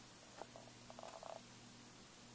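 Near silence: room tone with a steady faint hum and a few faint, soft ticks about a second in.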